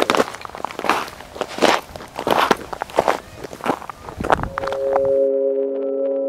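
Footsteps on dry, cracked earth, several people walking at a steady pace. Near the end a sustained drone of held tones comes in and the footsteps cut off suddenly.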